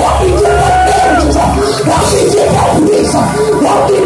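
Loud gospel praise music with a church congregation shouting and singing along. Many voices rise and fall over a low held bass note that stops about a second and a half in.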